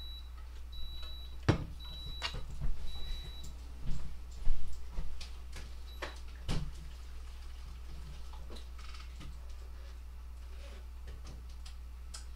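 Clothes iron beeping: short high electronic beeps about a second apart that stop about three and a half seconds in, the iron's auto shut-off alert. Knocks and bumps of someone getting up from a chair and moving about, the loudest about four and a half seconds in.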